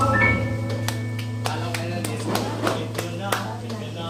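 The last chord of a live acoustic guitar song ringing on and slowly fading, over a steady low hum. A dozen irregular sharp taps and faint voices sound through the fade.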